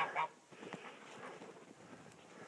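Faint calls of domestic geese and ducks, scattered and weak.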